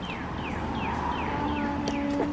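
A bird repeating short, quick falling chirps, about three a second. In the second half a person's voice holds one long, steady low note.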